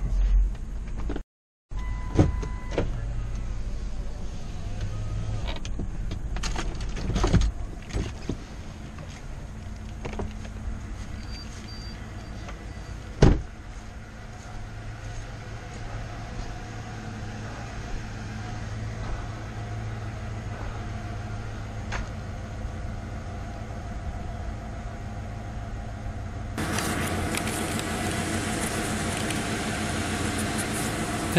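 Ford Expedition's engine idling steadily, heard from the camera on its windshield, with scattered clicks and one sharp knock about thirteen seconds in. Near the end the noise turns louder and fuller as the camera comes off the mount and is handled.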